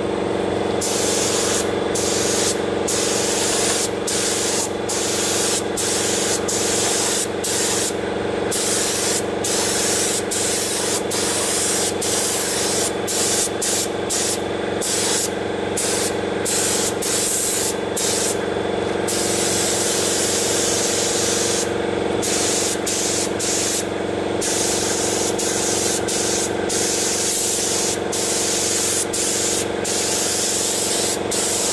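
Compressed-air paint spray gun hissing as it sprays paint onto the steel trailer. The trigger is let off many times, cutting the hiss for a moment each time. A steady hum runs underneath.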